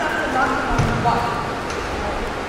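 Indistinct voices talking, with a single dull low thump a little under a second in.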